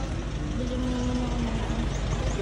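Steady low rumble of a motor vehicle engine idling close by, with a faint even hum in the middle.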